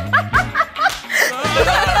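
A woman laughing in quick short bursts over background music, with more wavering laughter filling the second half.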